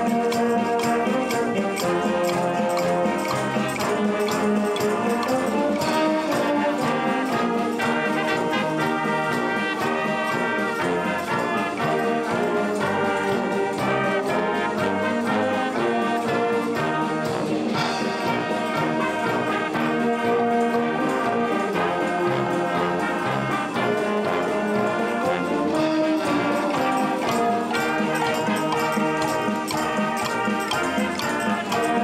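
Youth wind band playing a piece with brass to the fore, children joining in on small hand percussion such as wood blocks and shakers.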